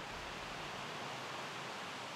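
Steady outdoor background noise, a faint even hiss with no distinct sounds in it.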